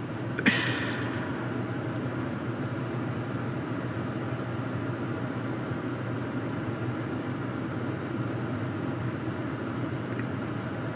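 Steady low hum and hiss of a parked car's cabin with its systems running, with a brief sharp click about half a second in.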